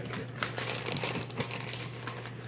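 Plastic bag of shredded cheese crinkling as it is handled, a run of quick crackles.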